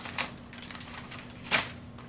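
Crumpled brown packing paper crackling and rustling as a kitten moves under it: a sharp crackle just after the start and a louder one about one and a half seconds in, with faint rustling between.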